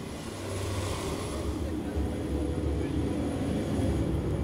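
Jet aircraft engines running: a steady low rumble with a hiss over it, growing slightly louder over a few seconds.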